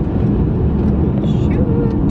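Steady low rumble of road and engine noise inside the cabin of a moving Mercedes-Benz car.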